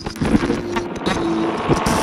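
A sampled car engine revving under a harsh rush of noise, starting suddenly.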